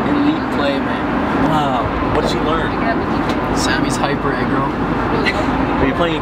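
Steady airliner cabin noise in flight, the drone of engines and rushing air, with indistinct talk over it.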